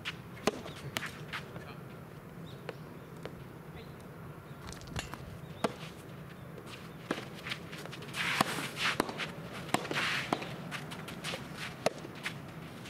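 Soft tennis point: sharp pops of rackets striking the soft rubber ball and the ball hitting the court, the first about half a second in with the serve and more spread through the rally, coming quicker near the end. Shoes scuff and slide on the court between about eight and ten seconds.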